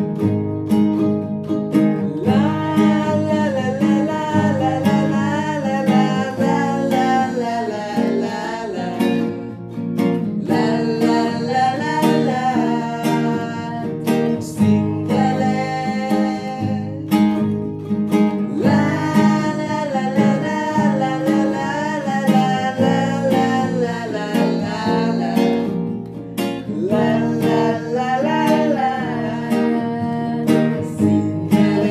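Acoustic guitar and ukulele strummed together, with a man singing a Sinhala song in phrases broken by short instrumental gaps.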